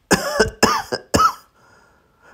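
A man coughing three times in quick succession, a cough acted out by the narrator for a sick boy, followed by a faint breath.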